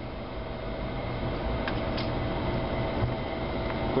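Panko-breaded Spam katsu sizzling in hot cooking oil in a frying pan: a steady hiss with a couple of faint pops about halfway through.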